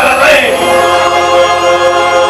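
A male voice singing the end of a lyric line over backing music, the voice stopping about half a second in while the accompaniment holds a steady sustained chord.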